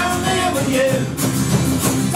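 Live folk-punk band playing: strummed acoustic guitar with electric guitar and double bass, loud and continuous.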